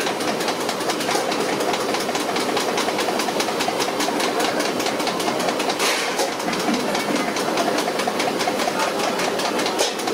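A machine running steadily with a fast, even clatter, and a brief hiss about six seconds in.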